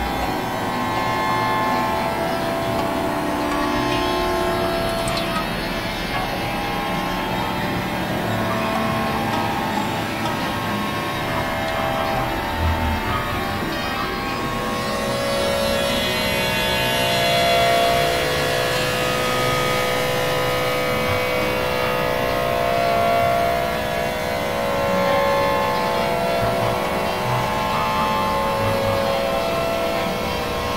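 Dense experimental sound collage: several music tracks layered over one another into a thick wash of held drone tones and noise. A new set of sustained mid-pitched tones comes in about halfway through.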